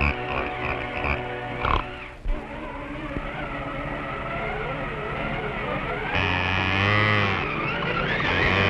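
Early-1930s cartoon soundtrack: music with several pitched parts and sliding, wavering notes. About six seconds in it turns louder and fuller.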